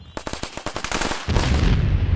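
Rapid automatic gunfire, then a heavy explosion that sets in about a second and a half in, with a long deep rumble.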